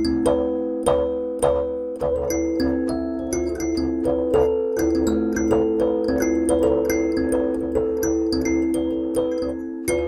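Sansula kalimba being plucked: a flowing melody of ringing metal tines, about two notes a second, overlapping as they sustain. The instrument is set down on a djembe's drum head, so it buzzes against the skin under the notes, like the shell or bottle-cap buzz of a traditional mbira.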